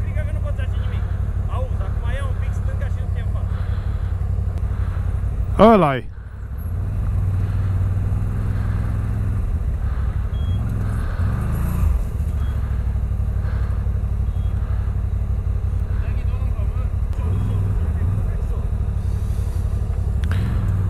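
CF Moto 1000 ATV's V-twin engine running at low throttle as the quad crawls through a deep, narrow gully. About six seconds in there is a brief shout, and the engine sound drops off for a moment before it picks up again.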